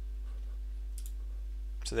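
A single computer mouse click about a second in, over a steady low electrical hum; a man's voice starts just before the end.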